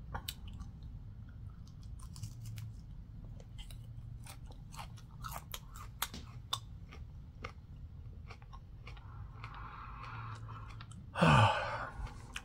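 A person chewing a raw green chili pepper: irregular small crunching clicks over a low steady hum, with a short, louder voice sound falling in pitch near the end.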